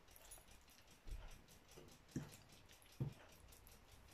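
Faint, soft squelching pats of hands pressing and rubbing an oily paprika marinade into the skin of a raw whole chicken, three soft pats about a second apart.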